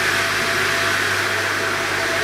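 An electric blower runs steadily: a rushing hiss over a low hum.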